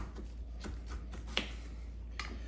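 Kitchen knife cutting into a lemon on a plastic cutting board: a few soft clicks and taps, one sharper about a second and a half in.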